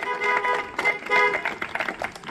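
Several car horns honking as applause, in overlapping short bursts, mixed with scattered hand claps.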